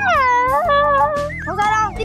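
A young child's high, whining voice, its pitch swooping down and back up, over background music.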